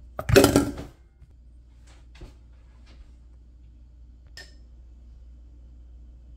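A glass spice jar with a metal cap being handled: a loud rattling scrape lasting about half a second near the start, then a few light clicks and a small tap with a brief metallic ring.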